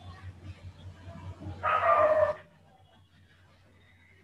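A single high-pitched call, a little under a second long, about halfway through, over a faint steady hum.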